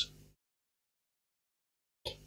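Near silence, after the last syllable of a man's speech fades out at the very start.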